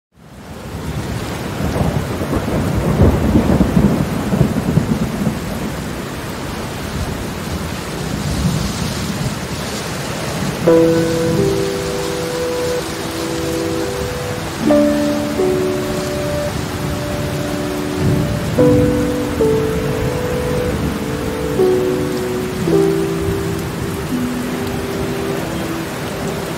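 Steady rain with a long rumble of thunder over the first few seconds. From about ten seconds in, soft held music chords join the rain, changing every four seconds or so.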